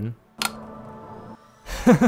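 A single sharp click as the white GAN 11M Pro cube box is pressed and pops open, followed near the end by a man laughing.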